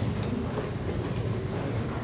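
Steady, indistinct hall room noise, mostly a low rumble with a faint haze above it and no clear tones or words.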